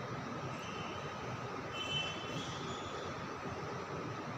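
Steady background noise: an even low rumble and hiss with a faint steady hum, and a faint high tone briefly about two seconds in.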